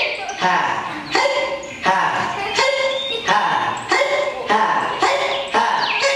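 A man imitating a dog, barking about eight times at an even pace, roughly once every 0.7 seconds.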